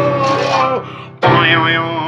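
The close of a sung children's song with guitar accompaniment: a held note slides down in pitch and fades. After a sudden break, a wavering tone with strong vibrato follows.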